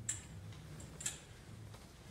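Two light clicks about a second apart, over a low hum.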